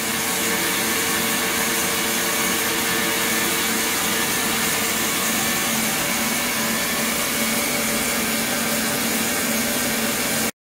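Steady hiss with a low hum under it from an ultrasonic cleaning tank running while its liquid circulates.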